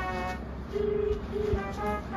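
A phone's ringback tone over the loudspeaker while a call connects: a steady low tone in two short pulses, ring-ring, about a second in. It comes after a brief bit of music.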